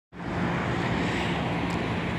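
Steady road-traffic noise from a nearby highway, with a faint low steady hum under it.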